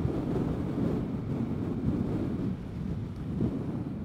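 Steady wind rush and running noise of a Vespa GTS 300 Super Sport scooter cruising on the highway, its single-cylinder engine under the wind, picked up by a mic on the rider's helmet chin strap.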